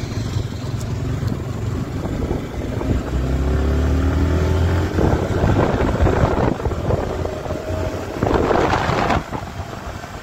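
Sport motorcycle engine running while being ridden, with wind buffeting the microphone. The engine pitch rises as it accelerates, from about three to five seconds in and again a little later.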